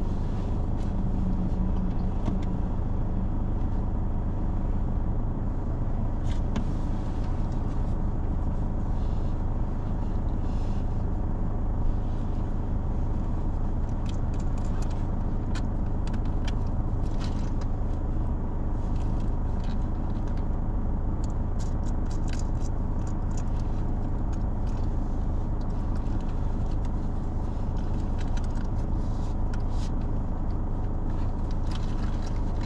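Car engine idling steadily while the car sits stationary, heard from inside the cabin as a constant low rumble. Faint irregular light clicks sound above it, mostly in the second half.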